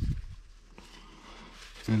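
Low, rumbling handling noise from gloved hands working a hydraulic coupler, fading out within the first half second, then quiet.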